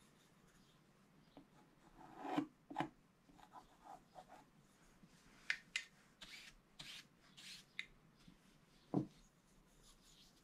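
A wide bristle paintbrush sweeping across a scratch-art page in several short strokes, brushing off the scratched-away black coating. It is then set down on the table with a single thump near the end. There are a couple of soft knocks earlier as things are handled.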